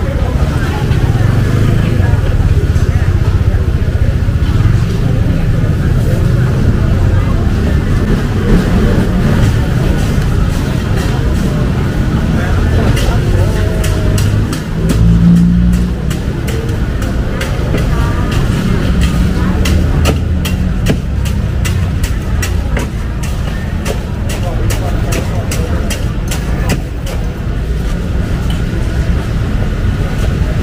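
Busy street-market ambience: chatter of a crowd over a steady low rumble, with a run of short sharp clicks and clatter through the second half.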